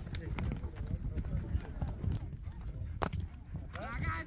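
Hoofbeats of a horse galloping over soft ploughed earth, heard as uneven dull thuds, with faint voices.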